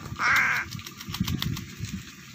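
A crow gives one harsh caw a quarter second in, followed by a scatter of small splashes and flicks of water as it bathes in a shallow puddle.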